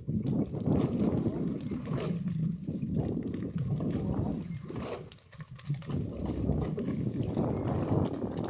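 Rumbling, irregular noise on a moving handheld microphone, with scattered knocks, as from wind and handling while the camera moves along the bank.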